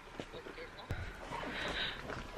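Faint, low speech with a sharp click about a second in, after which a low hum comes up.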